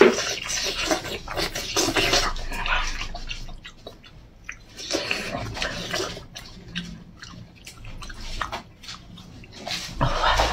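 Close-up wet chewing and lip-smacking of braised pork, many irregular short smacks and slurps. They come thickest in the first few seconds and again about five seconds in, and thin out near the end.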